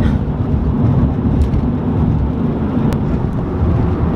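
Steady low rumble of road and engine noise inside a car cruising at highway speed, with a faint click about three seconds in.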